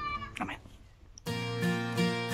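A short, high-pitched call at the very start, then a brief near-silent gap, and about a second in acoustic guitar music begins, with a steady rhythm.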